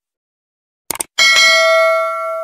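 A quick double mouse click about a second in, then a bright bell ding that rings on with several overtones and slowly fades. This is the stock sound effect of a subscribe-button and notification-bell animation.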